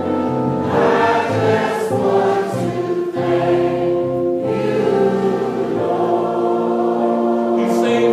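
Church congregation singing together in a gospel style, many voices holding long sustained notes.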